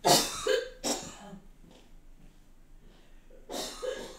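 A person coughing: a loud fit of several quick coughs in the first second, and another cough near the end.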